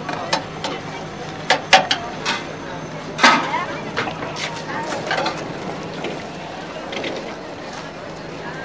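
Voices of people talking in the background, with a few sharp clicks about one and a half to two seconds in, over a steady low hum.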